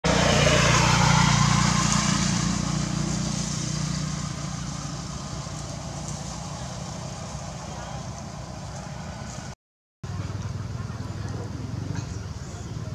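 A motor running steadily with a low hum, loudest at the start and fading away, cut off by a brief dropout near the end before it resumes.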